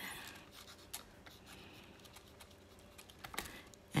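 Faint scratching of a fine-tip Sakura Pigma Micron pen writing a signature on a small paper tile, with a couple of light clicks.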